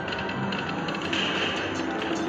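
Ainsworth video slot machine spinning its reels in a free-games bonus: rapid clicking reel-spin effects over the game's music.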